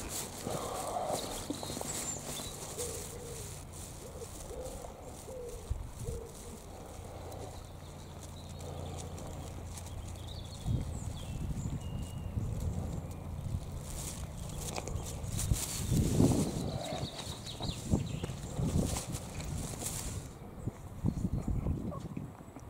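Footsteps on a path, irregular and heavier in the second half, with a few faint bird chirps.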